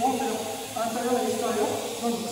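A man's voice making long, drawn-out hesitation sounds, two held stretches, over a faint steady hiss.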